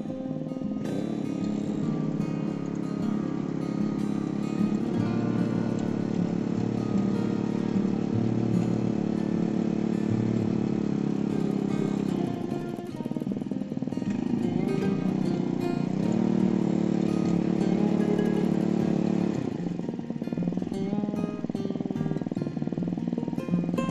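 Small petrol mini tiller engine running under load as its tines churn hard, dry soil. It eases off twice, about halfway through and near the end. Background music plays over it.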